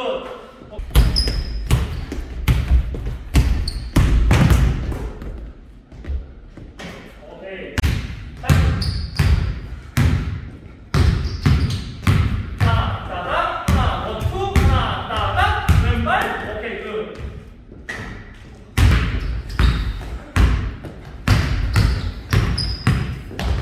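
Basketball dribbled hard and fast on a hardwood court in quick, irregular clusters of bounces, with short pauses between moves. Brief sneaker squeaks come in now and then.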